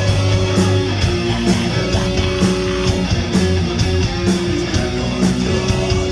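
Live rock band playing loud: electric guitars, bass and drums, with a cymbal struck about twice a second.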